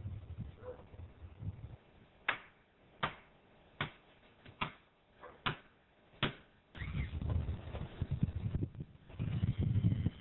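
Hammer striking a wooden batter-board stake six times, about 0.8 s apart. A cordless drill then runs in two bursts, driving a screw into the board.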